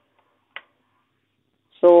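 Near silence broken by one short click about half a second in; a man's voice starts speaking near the end.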